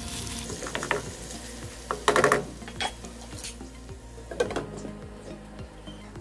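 Chicken pieces sizzling in a nonstick wok as a spatula stirs them, with a loud clatter of cookware about two seconds in and a smaller knock a couple of seconds later.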